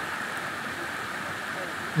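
Creek water rushing over rocky rapids, a steady even rush.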